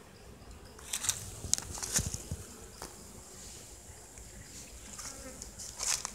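Honey bees buzzing at an opened wooden hive box, with sharp knocks and scrapes of the wooden frames being worked loose and lifted out, loudest about one to three seconds in and again near the end.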